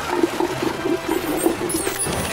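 Cartoon sound effect of a large volume of water being sucked up through a straw: a steady gurgling slurp.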